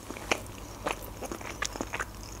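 Close-miked mouth sounds of sushi being chewed with the lips closed: soft wet clicks and smacks, about five of them scattered through the two seconds.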